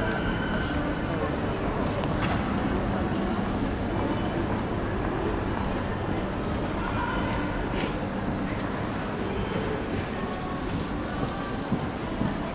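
Indoor shopping-mall ambience: a steady low rumble with a faint hum, distant voices of passers-by and a few light clicks.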